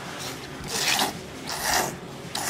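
A person slurping thick tsukemen noodles out of a bowl of dipping broth: a short faint slurp, then two long, loud, hissing slurps about a second apart.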